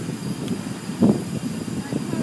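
Automatic car wash heard from inside the car: rotating wash brushes and water spray beating on the car body, a steady wash noise with one brief louder burst about halfway through.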